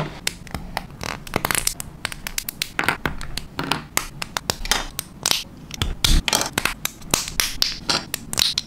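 Plastic model kit parts being handled and snapped together: irregular sharp clicks and taps of hard plastic on plastic, with short scratchy rubs as pieces are fitted and set down on a cutting mat.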